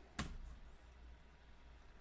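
A single computer keyboard keystroke: one short click about a fifth of a second in, over faint room tone.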